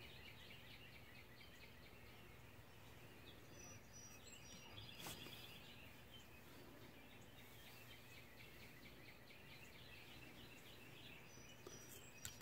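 Near silence: faint room tone, with a single faint tap about five seconds in.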